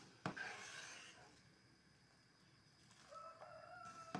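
A sharp knock followed by about a second of scraping, then a rooster starts crowing about three seconds in, a steady, slightly falling call held for a couple of seconds.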